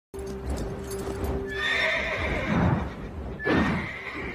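Pegasus, a winged horse, whinnying: one long whinny about a second and a half in, then a shorter one near the end, over orchestral film music.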